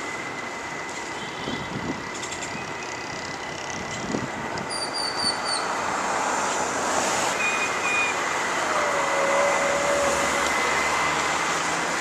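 Inline skate wheels rolling on asphalt, a steady rolling noise that grows slowly louder as a skater nears, with a thin steady high whine under it.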